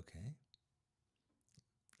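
Near silence after a brief spoken "okay", broken only by two or three faint short clicks.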